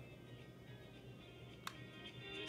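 Faint music playing from a Midland weather-alert clock radio's small speaker, with one sharp click about a second and a half in as a button on the radio is pressed.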